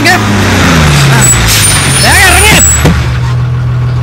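Bus diesel engine running down as the bus pulls in and stops, its pitch falling. A high brake squeal and a rush of air-brake hiss come near the middle.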